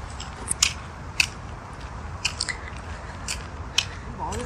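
Footsteps on a gritty paved trail: irregular crisp scuffs and crunches, about seven of them, over a low steady rumble on the microphone.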